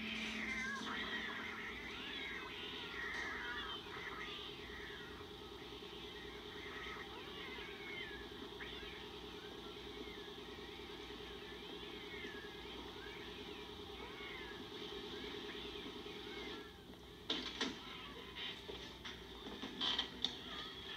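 Several cats meowing at once, their overlapping calls rising and falling in pitch, over a steady low hum. A few sharp knocks come near the end.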